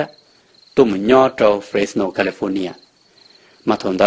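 Crickets trilling steadily and high-pitched, with a person speaking for about two seconds in the middle; the trill is heard alone in the short gaps before and after the words.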